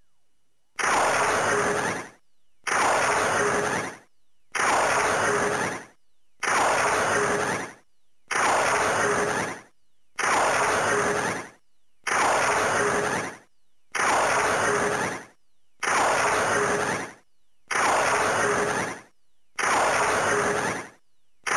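Ultraman Trigger Power Type Key toy playing the same short, noisy, blast-like electronic sound effect over and over, each burst a little over a second long and coming about every two seconds.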